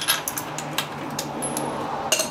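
Spark plug being unscrewed with a socket wrench from an Evinrude 6/8 hp outboard's cylinder head: a steady metal scraping with scattered clicks and clinks from the tool, over a faint low hum.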